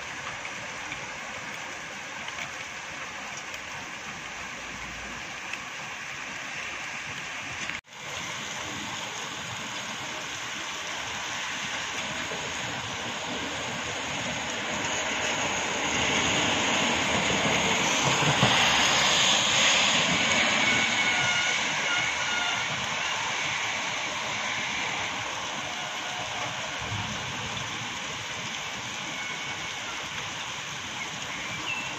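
Steady rain hiss, broken by a momentary dropout about eight seconds in. Midway through, a passing vehicle swells louder over the rain for several seconds, with a faint falling whine, then fades back.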